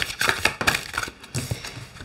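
A deck of oracle cards being handled and a card drawn: irregular quick clicks and rustles of card stock.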